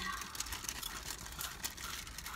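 Car engine idling, heard as a low steady rumble inside the cabin, with faint scattered crackles over it.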